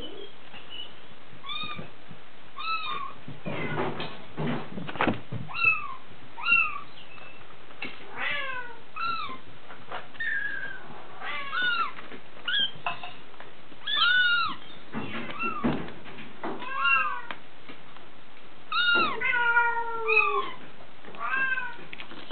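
Six-week-old Bengal kittens mewing over and over, short high-pitched calls that overlap at times, coming about once or twice a second. A few soft knocks come about four to five seconds in and again around fifteen seconds.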